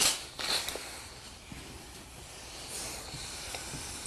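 Steam iron sliding over a cotton pillowcase on an ironing board: two brief swishes, one right at the start and one about half a second in, then a soft steady hiss.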